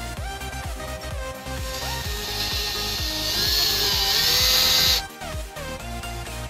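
Cordless drill driver running for about three seconds, driving a Phillips screw to fasten an LED turn-signal light to a plastic fender; it grows louder and stops suddenly, over electronic dance music.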